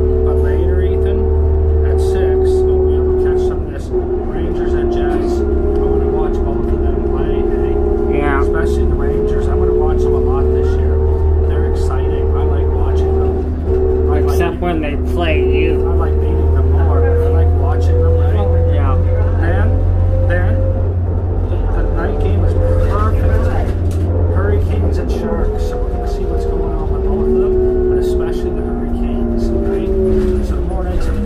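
Interior sound of a 2002 New Flyer D40LF diesel transit bus under way. There is a loud, steady low rumble and a whining drone that slowly rises and falls in pitch as the bus changes speed.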